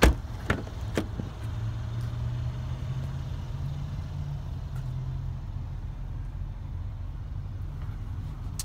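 A car's rear door latch clicking open as its outside handle is pulled, followed by two lighter knocks within the next second as the door swings open, over a steady low rumble.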